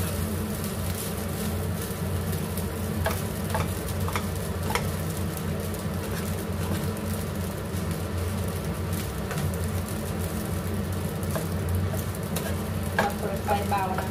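Fried rice sizzling in a nonstick frying pan as a plastic spatula stirs and turns it, with scattered clicks and scrapes of the spatula against the pan, over a steady low hum.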